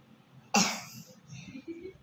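A girl coughs once, sharply, about half a second in, followed by a few faint throat sounds. She has a sore throat.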